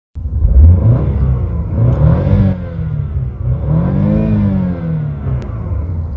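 BMW petrol engine revved in Park, blipped up and back down three times, its pitch rising and falling with each blip.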